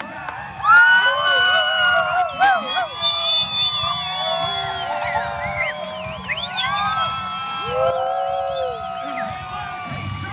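Airshow crowd yelling, whooping and screaming together, many voices holding long wavering calls, rising sharply less than a second in and keeping up to the end.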